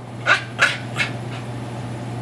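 A Boston Terrier gives three quick, breathy huffs, about a third of a second apart, in the first second, then goes quiet.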